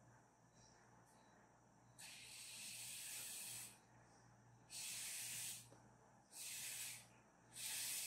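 Four puffs of breath blown hard through a drinking straw, each a short hiss of air, spreading watery gouache paint across paper. The first puff is the longest, and the rest follow about a second apart.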